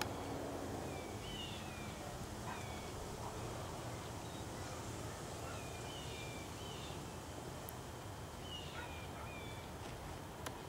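Birds chirping: short, falling chirps in small clusters every second or two, over steady low background noise.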